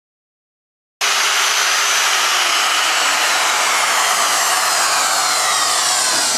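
Handheld electric router with a dovetail bit running loudly, starting abruptly about a second in, its high whine slowly falling in pitch. It is taking a pass to hog out the dovetail neck pocket of an upright bass.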